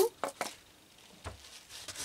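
A hand trigger spray bottle spritzing twice in quick succession onto a paper tissue, followed by faint handling and rubbing of the tissue.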